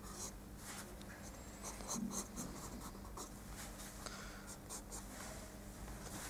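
Faint, quick scratching strokes of a pencil sketching on paper, several strokes a second, over a low steady hum.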